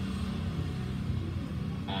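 Steady low rumble of background noise, with no speech until a hesitant 'um' right at the end.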